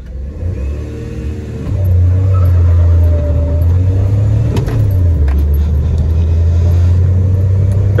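Maruti Suzuki Wagon R's engine accelerating hard from a standing start in a drag race, heard from inside the cabin. The engine sound swells about two seconds in and holds loud, with a brief dip near the middle before it picks up again.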